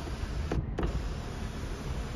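Electric moonroof motor of a 2011 Mazda 3 running steadily as the glass panel slides in its track, over the low noise of the car running.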